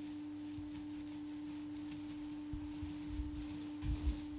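A steady hum held on one pitch, with a few soft low thumps in the last second and a half.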